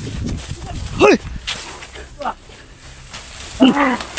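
A man's voice calling out "hoi" about a second in, the pitch falling sharply, with further falling calls near the end.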